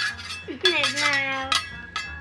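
Metal griddle spatulas clinking against each other as they are twirled and flipped, with a few sharp clinks: one right at the start, one a little after half a second, and one near the end.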